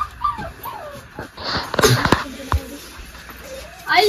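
A dog whining and whimpering in short, high, wavering calls, with a brief noisy burst about a second and a half in.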